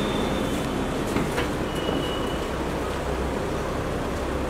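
A car running close by, a steady rumble and hiss, with a brief thin high squeal near the start and another about two seconds in.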